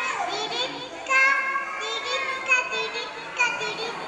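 Young children's high-pitched voices in short phrases with brief pauses between, one child leading through a microphone.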